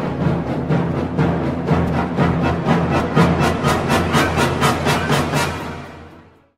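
Background music with a steady beat of about four percussive hits a second over sustained low notes, fading out near the end.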